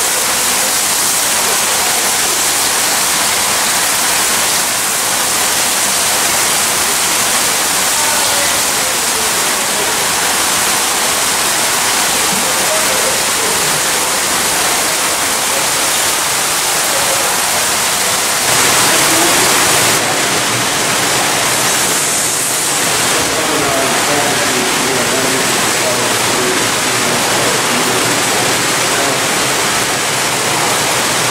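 Steady rushing of running water in hatchery troughs, with faint voices underneath. It gets briefly louder about two-thirds of the way through.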